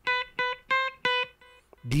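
Electric guitar with a clean tone picking short single notes high on the first string, around the 7th and 8th frets: four notes in about a second, then a fainter one.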